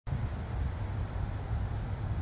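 Low, uneven outdoor rumble with a faint hiss above it.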